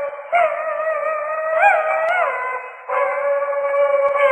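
Peking opera music from an old record: one high, held melodic line with small sliding ornaments, breaking off briefly twice, with a thin sound and no bass.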